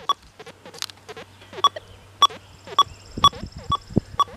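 XP Deus 2 metal detector's WS6 external speaker, running version 0.71 on the stock Fast program, giving a string of short high-pitched beeps about twice a second, with lower, shorter blips between them. The coil is being swept over a silver dime lying next to a small nail: the high tone is the dime being picked out beside the nail.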